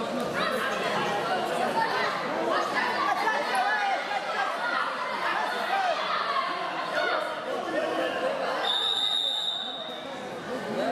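Indistinct chatter of many voices echoing in a large sports hall. Near the end, one steady high-pitched signal tone sounds for about a second.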